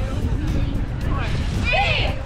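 Cheerleaders shouting a cheer in unison, with one loud yelled call near the end, over a steady low rumble.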